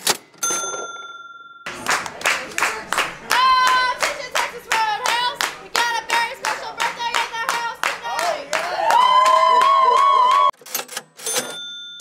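Restaurant staff clapping in a steady rhythm, about three claps a second, while chanting together in pitch. The chant ends on a long held shouted note about nine seconds in. A short steady tone sounds just before the clapping starts.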